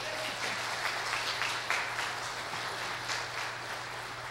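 A congregation applauding: many people clapping together in a steady patter that eases slightly near the end.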